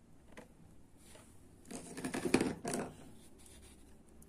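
Hands working polyester thread with a small steel crochet hook: a few faint clicks, then a burst of scratching and rustling from about two seconds in.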